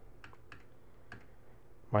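Computer keyboard keys tapped about five times, light separate clicks spread over the first second or so, over a faint low hum.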